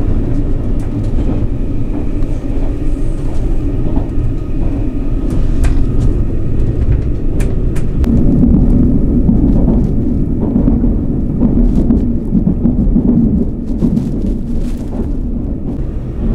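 Running noise inside the carriage of a JR Kyushu 787-series electric express train at speed: a steady low rumble with occasional sharp clicks. The rumble grows louder for several seconds in the middle.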